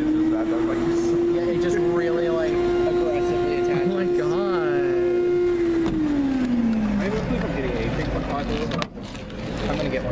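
Ice cream vending machine's vacuum pump humming at one steady pitch while the suction arm picks a cup, then winding down in pitch about six seconds in as it shuts off.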